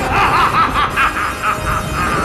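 An animated demon character's laugh: a run of short 'ha' pulses, about four a second, fading over the second half, over background music.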